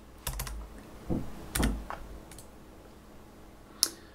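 A few separate keystrokes on a computer keyboard, spread out with gaps, then a single sharp click just before the end.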